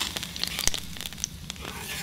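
Ghee sizzling as it melts in a hot cast iron skillet, with irregular crackles and pops, while a wooden spoon pushes it around the pan.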